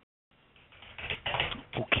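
Computer keyboard keys pressed in a quick run of clicks in the second half, heard over a telephone-quality conference line.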